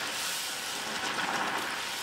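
Batter for a buñuelo de viento frying on a rosette iron held down in hot oil: a steady sizzle of bubbling oil.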